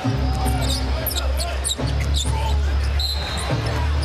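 Basketball game sound on a hardwood court: sneakers squeaking in short sharp bursts and a ball dribbling, over arena music with a steady heavy bass.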